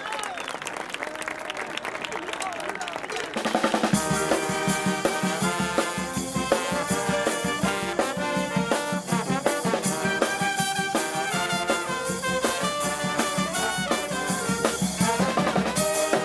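Voices shouting for about three seconds, then a xaranga street brass band strikes up loudly: saxophones, trumpets, trombones and sousaphone over bass drum, snare and cymbals, playing a tune with a steady beat.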